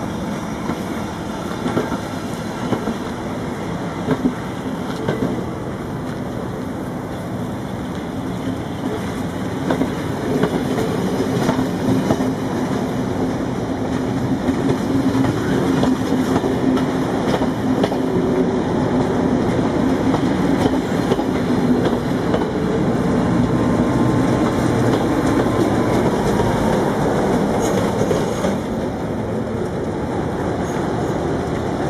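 Railway passenger coaches rolling slowly past, wheels clicking over the rail joints, with a steady low hum that grows louder in the second half.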